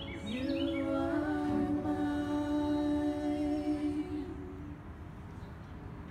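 A woman's voice holding one long, steady note for about four seconds, then fading out, at the close of an unaccompanied song.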